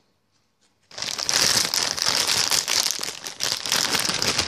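Loud, dense crinkling and rustling of something handled right at the microphone, starting about a second in.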